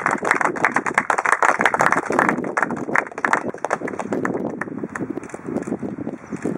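A small group clapping in applause, the claps thinning out near the end.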